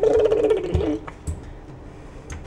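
A baby making a rough, buzzing vocal sound lasting about a second, the new sound he has just learned.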